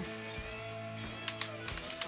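Two quick pairs of sharp plastic clicks about a second and a half in: the LEGO Quinjet's toy cannons being fired. Steady background music plays underneath.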